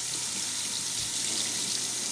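Tap water running steadily into a film developing tank and splashing over into a stainless steel sink: a plain running-water stop bath halting film development.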